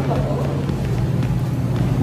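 Steady low machine hum with a faint hiss over it, holding an even pitch without change.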